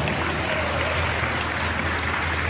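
Congregation applauding: steady, dense clapping.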